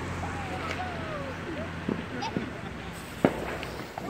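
Faint voices outdoors, with a low engine rumble that fades out about a second in and a single sharp click a little after three seconds.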